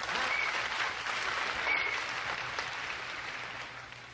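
Concert audience applauding, slowly dying away near the end, with a few brief high tones over it.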